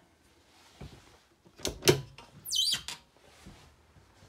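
Travel trailer cabinet door being handled: a few hard knocks, the loudest about two seconds in, then a short high squeak that falls quickly in pitch, and one more knock.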